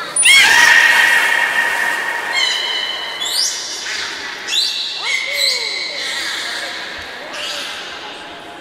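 Beluga whales calling in air. A string of long, steady whistles with rising starts overlap one another, the loudest coming in just after the start, and a short falling tone sounds about five seconds in.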